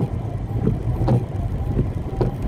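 Inside a car crawling in traffic in heavy rain: a steady low engine and road hum under the noise of rain on the car. The windshield wipers are sweeping, with a few faint ticks.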